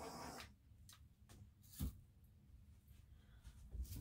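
Small handheld blowtorch hissing as it is played over freshly poured resin to pop surface bubbles. The flame cuts off about half a second in, then near silence with a few faint clicks.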